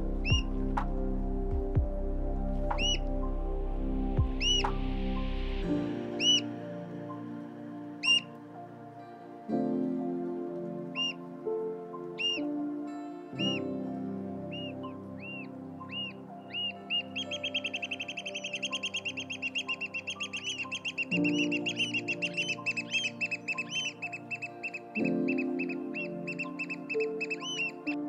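Oystercatcher calling: loud, single high piping notes about once a second, coming gradually faster, then past the halfway point running together into a rapid, continuous piping trill. Soft background music plays under it.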